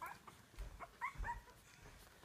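Two-week-old French Bulldog puppies whimpering and squeaking: a few short, faint, high-pitched calls, one at the start and a couple about a second in.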